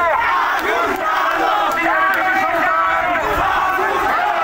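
A crowd of marching men shouting slogans together, many voices overlapping in a steady mass.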